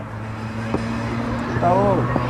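A steady low hum, with a single knock about three quarters of a second in and a brief shouted call near the end.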